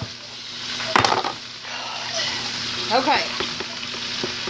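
Chopped cabbage frying in a skillet with bacon, a steady sizzle, with one sharp knock about a second in.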